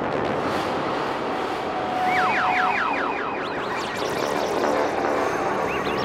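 Psychedelic trance electronic music intro: a dense, noisy synth wash. About two seconds in comes a quick run of repeated siren-like synth pitch sweeps, with a few more near the end.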